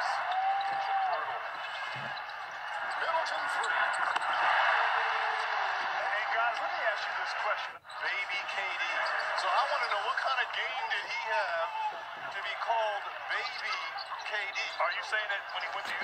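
Audio from a TV broadcast of an NBA basketball game: steady arena crowd noise with commentators' voices over it, and a basketball bouncing on the court. The sound cuts out abruptly for a moment about eight seconds in.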